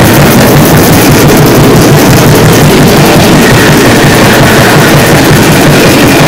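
Raw black metal buried in noise: a dense, heavily distorted wall of sound at a constant loud level, with a fast, even pulse in the low end.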